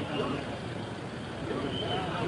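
Street noise from traffic, with indistinct voices of people nearby, louder near the end.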